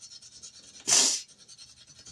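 A single short, hissy breath from the woman about a second in.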